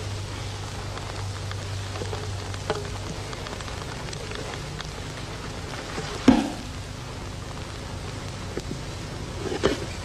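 Fingers rubbing and lightly tapping bongo drum skins over a steady hiss. A sharp hand slap about six seconds in makes the drum ring briefly, and a softer flurry of beats comes just before the end.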